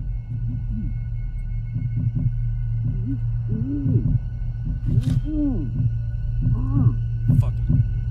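Film sound design: a low steady drone with faint high held tones under groaning, voice-like sounds that swoop up and down in pitch, about half a second each, three times in the middle. A couple of sharp clicks come near the middle and toward the end.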